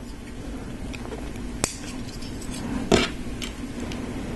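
Small LEGO plastic pieces clicking and tapping together as a rocket is assembled and clipped on by hand. There are two sharp clicks, one about a second and a half in and a louder one just before three seconds, with faint handling taps between.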